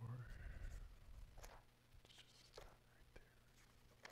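Near silence in a small room: a faint, drawn-out voice-like sound in the first second, then a few soft clicks.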